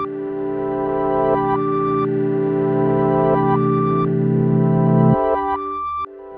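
Instrumental music: sustained, slowly changing chords over a held low note, the upper notes shifting every second or two. The low part drops away after about five seconds and the music breaks off briefly near the end before swelling back in.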